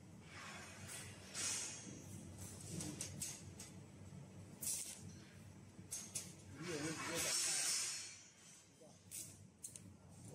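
Welding arc on titanium, making short spot welds one after another: bursts of hiss, the longest and loudest about seven to eight seconds in, with short clicks between welds.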